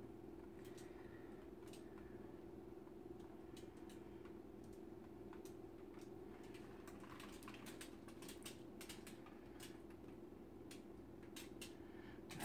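Near silence: a faint steady hum with scattered light clicks and ticks from a canvas being tilted by hand, the clicks coming more often in the last few seconds.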